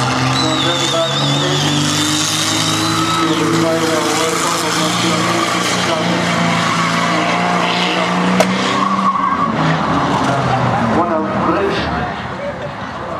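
A banger-racing car's engine is held at high revs as the car spins its wheels, with tyres squealing and skidding on the track. The engine note stays steady until about three-quarters of the way through, then breaks up.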